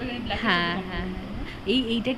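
A woman's voice talking, with one drawn-out vowel about half a second in.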